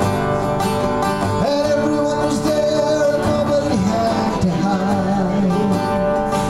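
A man singing while strumming an acoustic guitar, with a long held vocal note about a second and a half in.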